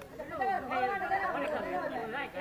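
Several people's voices talking over one another, a loose chatter.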